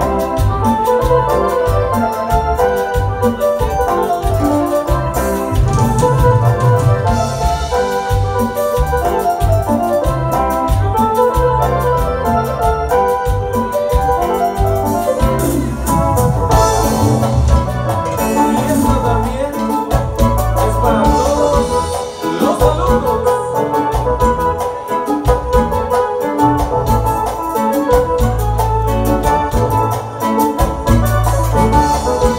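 Live grupera band music led by an organ-sounding electronic keyboard holding sustained chords. A steady beat of low bass notes and drums runs underneath.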